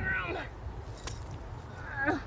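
A bunch of keys jingling on a keyring, with one sharp click about a second in.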